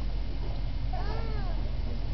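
A single short, high-pitched call about a second in, rising and then falling in pitch, over a steady low rumble.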